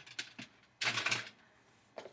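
Plastic measuring cups handled and set down on a hard counter: a few light clicks near the start, then a brief scraping rustle about a second in.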